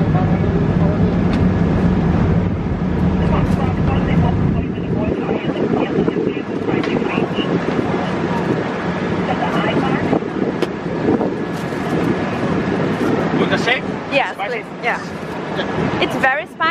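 Busy city street noise: a heavy, steady low engine rumble from traffic for the first few seconds, then general traffic din with indistinct voices of passers-by, which become clearer near the end.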